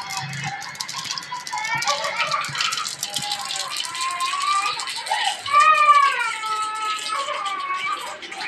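Fast crackling of seeds in hot oil in a steel pot on a gas stove, during tempering. A high-pitched voice in long sliding notes sounds over it, loudest a little past the middle.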